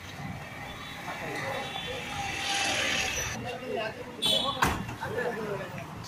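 Indistinct voices talking, with a hissing patch a little past two seconds in and a single sharp knock about four and a half seconds in.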